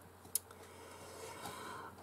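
Quiet room tone with one short, sharp click about a third of a second in.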